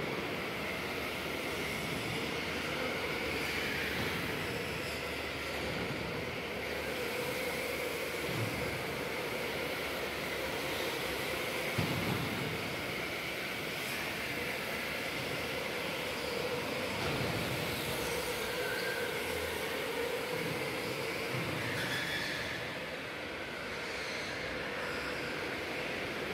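Electric go-karts running on an indoor track: a steady motor whine with tyre noise that swells and fades as karts pass. There is one brief knock about halfway through.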